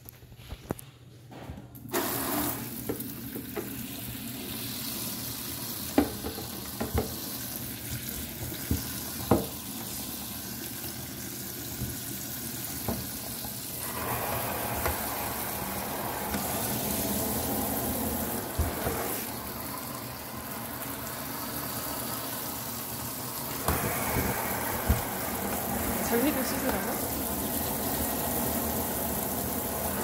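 Kitchen tap running into a stainless steel sink, starting about two seconds in, with a few sharp clicks soon after. The water drums on a plastic punnet of cherry tomatoes held under the stream, and the sound grows fuller about fourteen seconds in.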